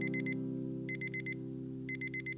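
Digital alarm clock beeping in quick groups of about four high beeps, one group roughly every second, over a held low music chord.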